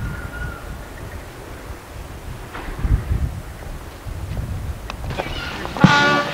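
Wind buffeting an old camcorder's microphone as a low rumble, with a few short knocks. Near the end, music with brass begins.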